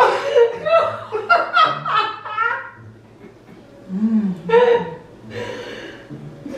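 A person laughing in a quick run of chuckles that dies away about three seconds in, followed by a few short voice sounds near the end.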